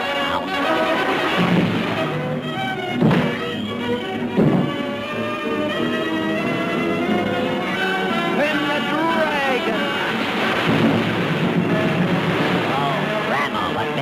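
Orchestral cartoon score playing throughout, with two heavy thuds about three and four and a half seconds in and sliding notes near the middle.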